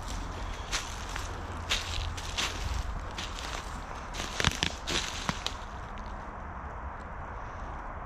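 Footsteps crunching through dry fallen leaves, irregular steps for the first five seconds or so, then quieter, over a steady low rumble.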